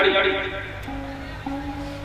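Sarangi playing long, steady bowed notes, broken by short gaps between them, as the singer's voice trails off at the start.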